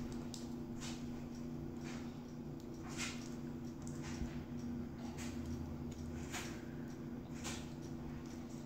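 Faint, scattered crinkles of a small foil wrapper being picked at and torn by a child's fingers, over a steady low hum.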